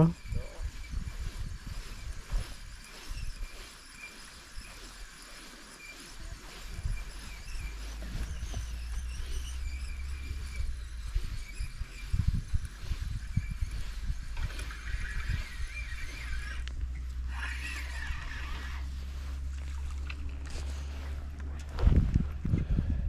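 Spinning reel being wound while a hooked fish is played in on a feeder rod, with its winding loudest between about 14 and 19 seconds in.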